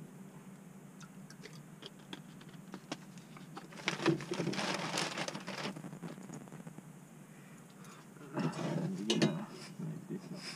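Camping gear being handled: scattered light clicks and knocks, with two longer stretches of rustling, one about four seconds in and a shorter one near the end.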